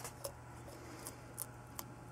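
Blue tegu chewing a cockroach it has just taken from the jar: about half a dozen faint, sharp crunching clicks, unevenly spaced, over a low steady hum.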